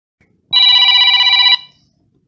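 A single telephone ring with a fast trill, about a second long, starting half a second in.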